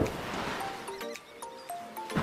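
An explosion sound effect, its rumble fading away over background music.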